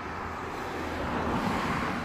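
A passing road vehicle's rushing noise, swelling to a peak about a second and a half in and then easing off.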